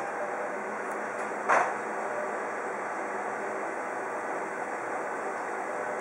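Bizhub colour office copier running a copy job: a steady whirr from its fans and rollers, with one short click about a second and a half in.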